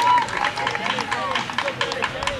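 Players and spectators at a girls' soccer game shouting and calling out, several high voices overlapping.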